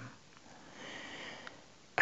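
A narrator's quiet in-breath through the nose in a pause between sentences, lasting under a second, followed by a faint click.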